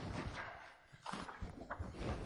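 Irregular light knocks and rustling in a room, with a brief lull about a second in.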